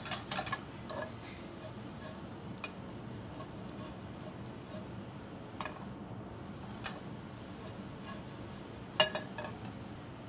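A metal spoon clinking and scraping now and then against a stainless steel skillet while stirring breadcrumbs toasting in hot oil, over a steady hiss. There are a few sharp clinks, the loudest near the end.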